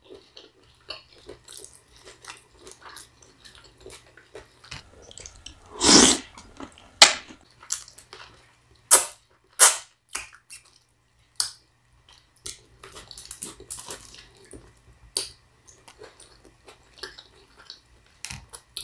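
A person eating with her fingers close to the microphone: chewing and lip smacks with scattered sharp clicks, and one louder, longer mouth noise about six seconds in.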